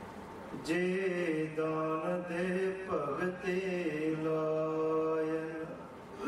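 A man's voice chanting slowly in long, nearly level held notes. It starts under a second in, shifts pitch a few times, and stops just before the end.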